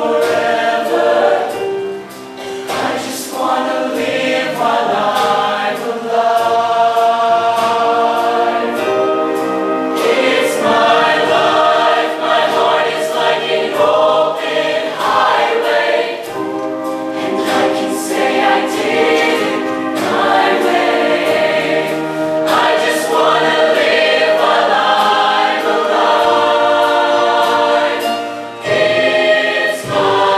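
Mixed show choir of men's and women's voices singing full chords, backed by a live band.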